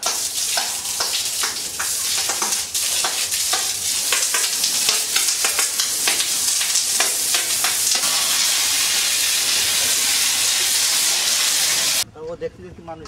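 Water from a hose jetting onto a cow's hide and the wet floor: a loud, steady hiss with irregular crackling spatter, smoothing out near the end.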